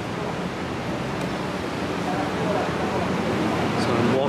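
Steady outdoor street ambience picked up by a camera's built-in microphone while walking: a constant rushing noise with faint voices of passers-by.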